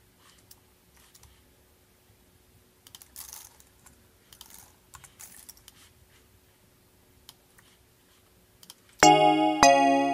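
Faint computer keyboard and mouse clicks over a low steady hum while regions are edited in a music program. About nine seconds in, playback of the beat's loop starts suddenly and loudly: sampled keyboard chords with sharp drum-like hits.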